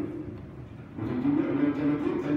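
A man's voice reading aloud in long, drawn-out tones, picking up again about a second in after a short pause.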